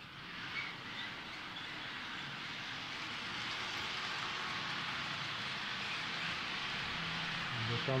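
Model train running along the layout's track, its electric motor and metal wheels making a steady whirring hiss that builds over the first two or three seconds and then holds.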